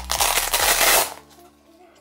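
Hook-and-loop (velcro) fastener ripping apart as a pistol holster is pulled off its velcro mount inside a fanny pack: a loud, crackling rip lasting about a second.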